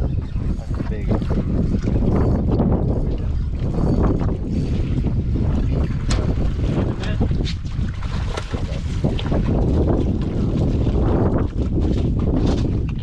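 Steady, loud wind rumble on the microphone, with a few short sharp clicks scattered through it.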